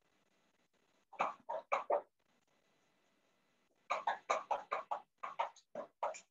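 Two runs of short, sharp animal calls: four in quick succession about a second in, then a faster run of about a dozen from about four seconds in.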